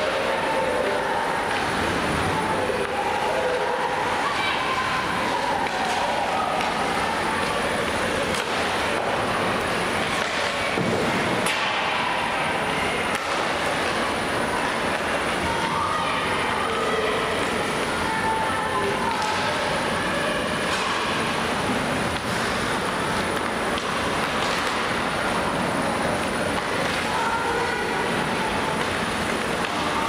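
Ice hockey game in a large, near-empty rink: a steady rushing noise of the arena and skating, with faint distant shouts from players and a few sharp stick-and-puck clicks.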